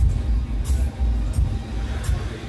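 Music played through a car audio system, with a deep bass beat from a Krack Audio 10-inch subwoofer and crisp cymbal ticks about every two-thirds of a second.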